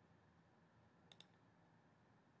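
Near silence, broken a little over a second in by a faint double click from a computer mouse button, pressed and released in quick succession.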